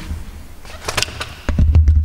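Handling rumble and footsteps from a handheld camera being carried by someone walking, with a few light clicks. The rumble grows much louder about one and a half seconds in.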